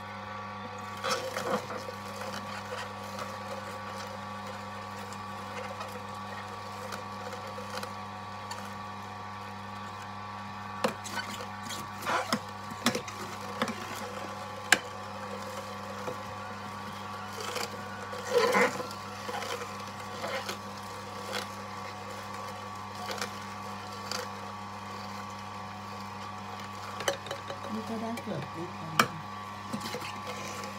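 An electric kitchen machine's motor making fruit and vegetable juice, running with a steady hum. Scattered short knocks and clatters come as produce is fed in and moved around.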